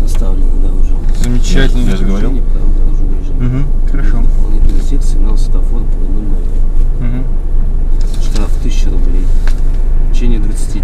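Indistinct talking in a car cabin, over a steady low drone from the car.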